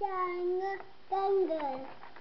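A young child singing in a high sing-song voice: two long held notes, the second sliding down in pitch near the end.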